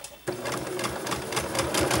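Domestic electric sewing machine starting about a quarter second in and then running steadily, sewing a row of long straight stitches that will be pulled to gather a ruffle.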